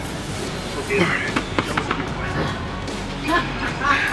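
Background music over voices in a gym, with a few sharp clicks about a second and a half in.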